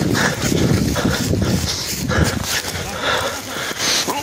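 Rustling and scattered thumps from a phone being handled on the move, with indistinct voices.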